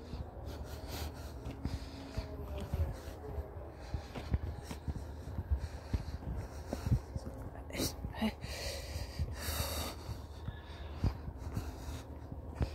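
Footsteps on a dirt field track with a low rumble of wind and handling on the phone's microphone. There is a short breathy huff about nine seconds in.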